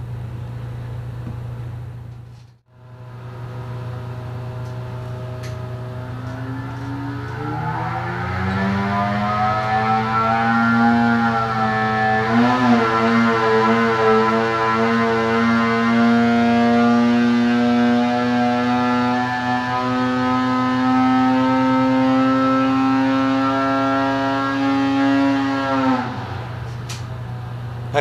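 Arctic Cat 800 two-stroke twin snowmobile engine on a dyno pull: it runs at low speed, revs up over a few seconds, then holds a high, slowly rising pitch for about fifteen seconds under load before dropping back sharply near the end.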